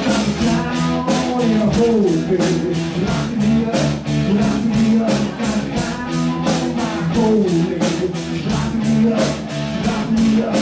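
Live rock band playing guitar over a drum kit that keeps a steady beat.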